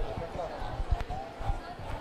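A string of dull low thumps and knocks close to the microphone, under faint murmuring voices of a large audience.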